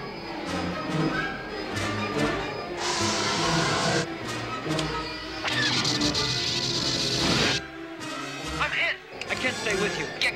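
Space-battle film soundtrack: an orchestral score mixed with starfighter engine roar and laser-cannon fire. There are two long rushes of noise, one about three seconds in and one from about five and a half seconds, the second cut off sharply.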